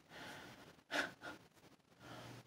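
A man's short breath out through the nose about a second in, followed by a smaller one, faint.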